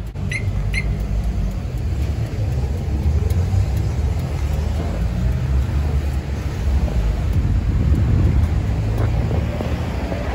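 Harley-Davidson Milwaukee-Eight 107 V-twin engine idling with a steady low rumble.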